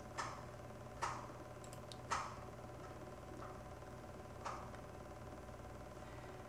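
Four isolated computer mouse clicks, irregularly spaced, over a faint steady electrical hum.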